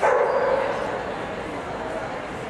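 A Nova Scotia Duck Tolling Retriever gives one loud, drawn-out bark that starts suddenly and fades within about a second. Murmuring crowd chatter of a busy show hall is heard behind it.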